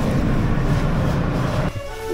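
Interior of a New York City R subway train car in motion: a steady, loud rumble of the wheels and running gear, which cuts off abruptly near the end.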